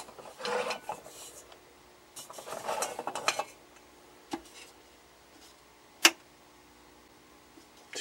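Handling noise at a vintage capacitor tester: scratchy rustling around two to three seconds in, then isolated sharp clicks, the loudest about six seconds in, over a faint steady hum.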